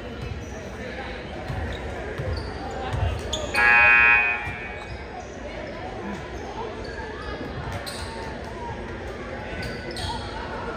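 A basketball bounced on a hardwood gym floor about three times, then a loud, steady pitched tone lasting under a second, over a gym full of background chatter.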